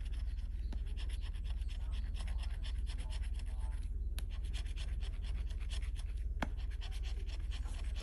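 A scratch-off lottery ticket's coating being scraped away with a bottle-opener-shaped scratcher tool: rapid, continuous short scratching strokes.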